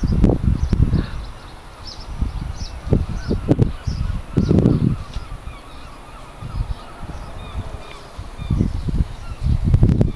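Irregular low rumbles and thumps on the microphone of a handheld camera, with faint short bird chirps high above them.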